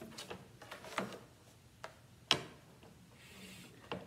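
Scattered clicks and light knocks from a straight-edge mat cutter and mat board being handled as the board is slid into position and the cutter's sliding parts are moved, with one sharper click a little past two seconds in.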